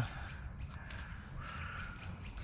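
Faint rustle and small clicks of a GoPro being pushed into a stretchy running-shorts pocket, with a bird calling faintly in the distance.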